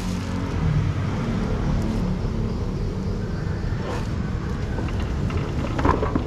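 A steady, low mechanical rumble in the background, with a couple of brief knocks near the end.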